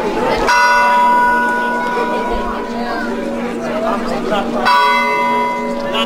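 Church bell tolled in slow single strokes, struck twice about four seconds apart, each stroke ringing on and fading: the slow funeral toll rung for the Good Friday Epitaphios procession. Crowd voices chatter underneath.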